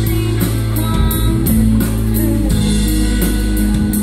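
A live pop-rock band playing through a PA: drum kit with cymbals struck on a steady beat, sustained electric bass notes and keyboard.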